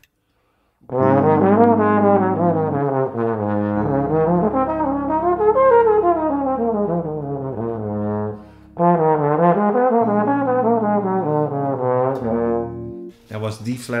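Tenor trombone playing two jazz practice phrases, each a chord's arpeggio running up and a scale running back down, with a short breath between them about eight seconds in. Speech follows near the end.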